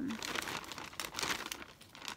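Plastic carrier bag rustling in irregular crackles as a hand rummages inside it.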